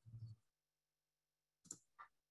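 Near silence. The tail of a spoken "uh" fades out at the start, and one short, faint click comes near the end.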